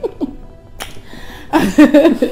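A single short lip smack from a kiss a little under a second in, then giggling laughter near the end, over soft background music.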